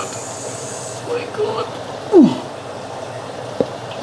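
Water pouring from a pipe into a glass aquarium as it fills, a steady rushing. A short falling vocal sound comes about halfway through, and there is a sharp click near the end.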